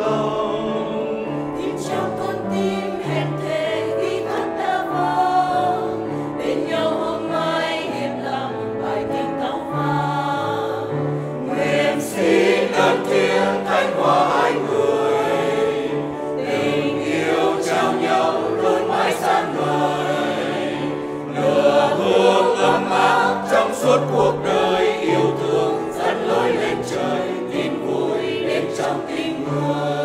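Church choir singing in many voices together, growing louder about twelve seconds in and again about twenty-one seconds in.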